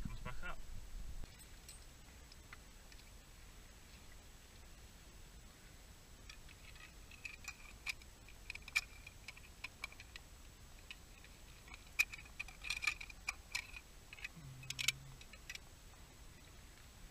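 Scattered small clicks and ticks of a hand and loose pebbles knocking against rock in a shallow rock-pool gully, heard faintly with a light crackle, as the hand feels under a ledge. A brief louder rumble cuts off about a second in.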